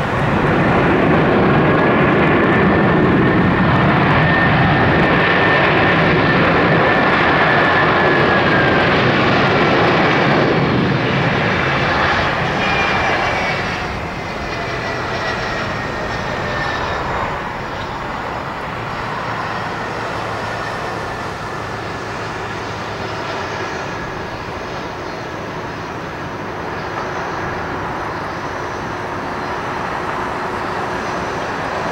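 Airbus A330-300 airliner's jet engines on the landing rollout, rising to a loud rush with a high whine just after the nose wheel comes down, typical of reverse thrust. It holds for about ten seconds, then winds down with a falling whine and settles to a quieter steady rumble as the airliner slows on the runway.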